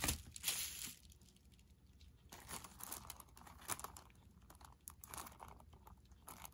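A plastic zip-lock bag crinkling as it is handled, with a few louder crackles in the first second, then faint scattered rustling.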